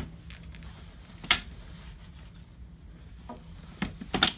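A single sharp click about a second in, as the stroller canopy's fitting is pushed onto the Mountain Buggy Urban Jungle frame, followed by a couple of faint ticks of handling near the end.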